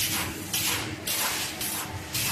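Automatic roll-to-sheet crosscutting (sheeter) machine running, a rhythmic hissing swish repeating about three times in two seconds over a low steady machine hum.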